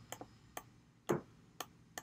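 Faint, irregular light clicks of a stylus tapping and stroking a drawing tablet during handwriting, about seven in two seconds, the loudest about a second in.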